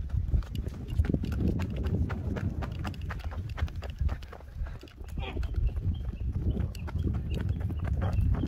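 Hoofbeats of a young Korean Warmblood foal cantering loose on sand: a quick, irregular run of thuds and scuffs.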